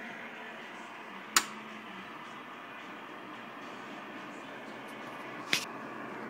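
Steady whir of the CB base amplifier's cooling fans, broken by two sharp clicks, one about a second and a half in and one near the end.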